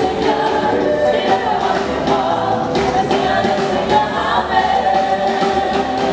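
Gospel choir singing live in several-part harmony with held notes, backed by a band with a drum kit keeping the beat.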